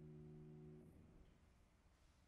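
Faint last chord of a grand piano dying away, cut off about a second in as the dampers fall, leaving near silence.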